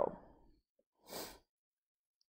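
A woman's short, faint breath in, about a second in, between pauses in her speech, with near silence around it.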